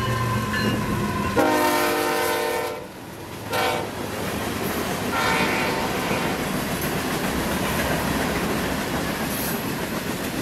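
Horn of a Florida East Coast GE ES44C4 diesel locomotive sounding as it passes close by: one longer blast, a short toot, then a fainter third. Under it runs the steady rumble of the passing locomotives and then the clickety-clack of loaded freight cars rolling past.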